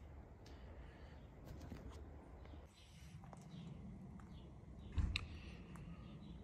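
Quiet background hiss with a few light clicks and taps, and one louder soft knock about five seconds in.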